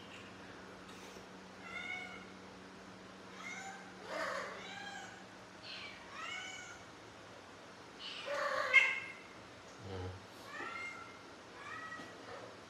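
Kittens meowing repeatedly: about ten short, high-pitched meows, each rising and falling in pitch, the loudest about nine seconds in.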